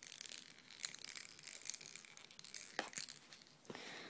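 Faint rustling and small clicks of things being handled in and around a fabric backpack, with one sharper click about three seconds in.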